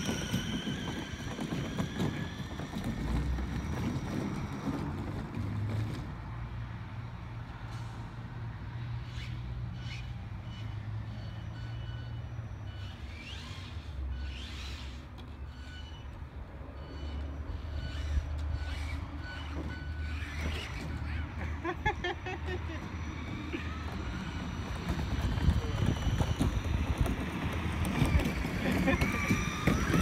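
Whine of an SC10 4x4 RC truck's Castle brushless electric motor as it tows a loaded wagon away; the whine sinks in pitch and fades over the first few seconds. A steady low rumble lies underneath, and the motor whine comes back, rising, near the end.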